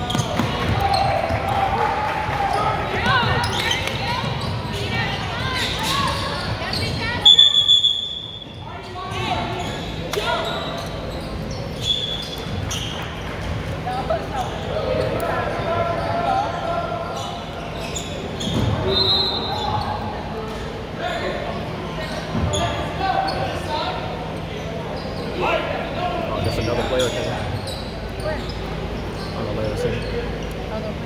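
Basketball game in a large, echoing gym: the ball bouncing and players and spectators calling out, with a short, shrill referee's whistle blast about seven seconds in that is the loudest sound.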